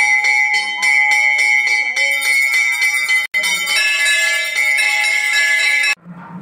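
Temple bells ringing rapidly and without pause, struck several times a second over a steady metallic ring, during an aarti lamp offering. The ringing drops out for an instant about halfway, shifts in tone just after, and stops suddenly at the end.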